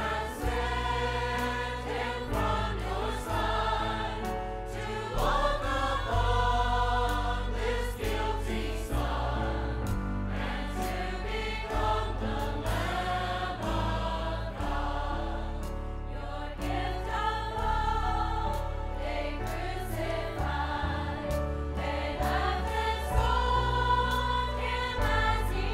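Large mixed choir of men and women singing a gospel song together in full voice, over instrumental accompaniment with sustained bass notes.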